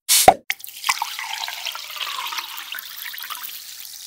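A water sound effect on the closing logo: a sudden splash with a low plop, a couple of sharp clicks, then a fizzing, crackling hiss that slowly fades.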